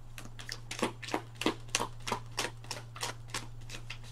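Tarot cards being shuffled by hand: a quick, irregular run of crisp card snaps, about five a second, over a steady low hum.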